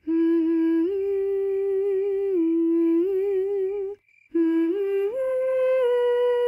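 A single voice humming a slow lullaby melody in long held notes that step up and down in pitch, with a short break for breath about four seconds in.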